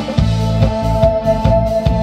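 Live band playing: a drum kit keeps a steady beat of about four hits a second over low bass notes and steady held tones.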